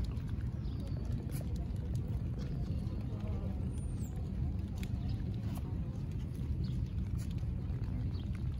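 Outdoor ambience: a steady low rumble, with faint distant voices now and then.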